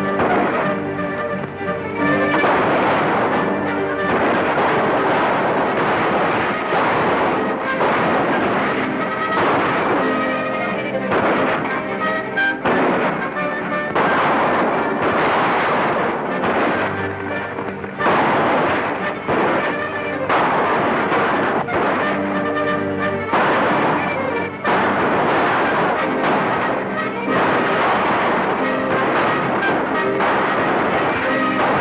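Orchestral western film music playing throughout, with repeated gunshots over it.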